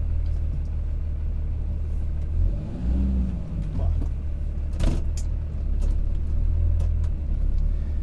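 Cummins inline-six turbo diesel of a 2008 Dodge Ram 2500 running, a steady low rumble heard from inside the cab, with a single sharp clunk about five seconds in.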